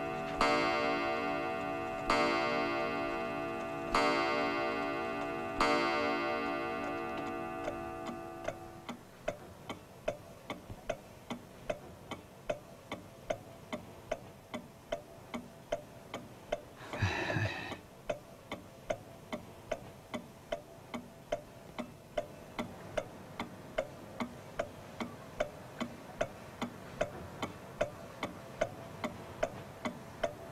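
Old wooden pendulum mantel clock striking four times in the first few seconds, each ringing stroke fading slowly, then ticking steadily at about two ticks a second. A brief soft noise comes about halfway through.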